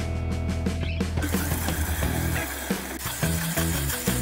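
Background guitar music, with a countertop blender motor starting about a second in and running steadily as it purées a soy milk and strawberry smoothie.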